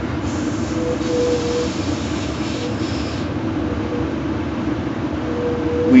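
Passenger train car's running noise heard from inside the cabin: a steady rumble with a faint tone that comes and goes. A hiss sits over it for the first three seconds, then stops.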